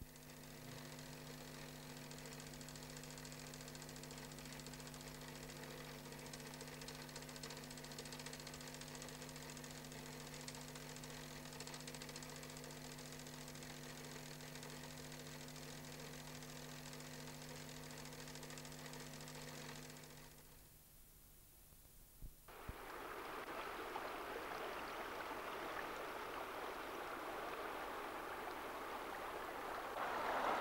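A steady mechanical drone that holds one unchanging pitch for about twenty seconds, then cuts off. After a short lull and a click, water rushes in a continuous noise that grows louder toward the end.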